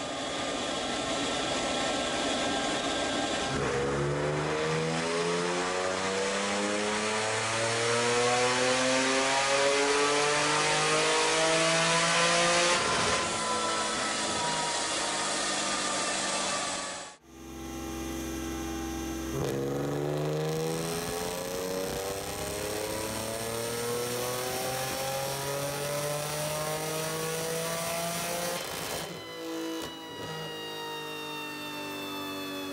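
Supercharged BMW E46 330ci's 3.0-litre M54 inline-six making two full-throttle pulls on a chassis dyno. Each time the engine note climbs steadily through the revs for about nine seconds, then falls away as it backs off. The sound breaks off sharply between the two runs.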